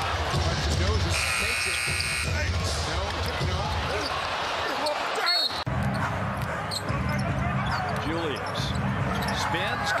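Basketball arena game sound, with crowd noise and a ball bouncing on the hardwood court. About a second in, the shot-clock horn sounds for nearly two seconds as the shot clock runs out. A brief break about five seconds in.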